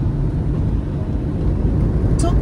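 Steady low road and engine rumble of a car driving at highway speed, heard from inside the cabin.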